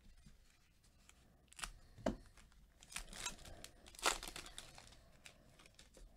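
A foil 2020 Panini Phoenix football card pack wrapper is torn open and crinkled by hand, in a few sharp rips and crackles. The loudest come about two seconds and four seconds in.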